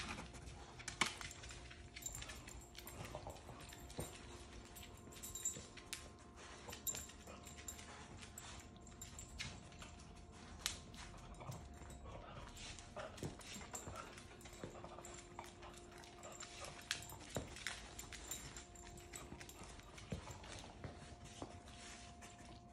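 A dog's claws clicking and tapping faintly and irregularly on a hardwood floor as it moves about searching, over a faint steady hum.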